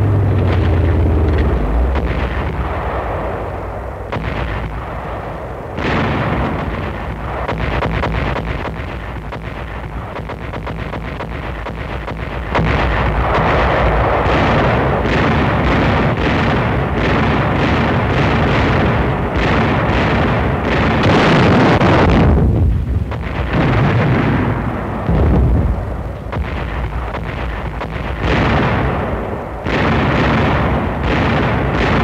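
Battle sound of artillery and tank gunfire with explosions, shot after shot in quick succession. There is a somewhat quieter stretch in the first part, then a denser, louder barrage from about twelve seconds in.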